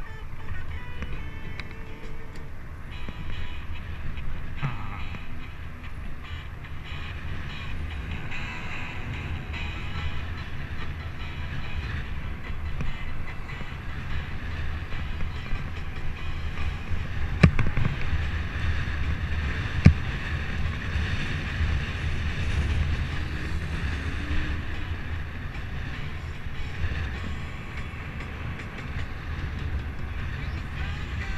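Steady low rumble of wind on the microphone and road noise from a bicycle riding along city streets, with two sharp knocks a couple of seconds apart around the middle.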